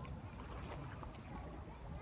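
Low, uneven rumble of wind buffeting the phone's microphone, with a few faint ticks.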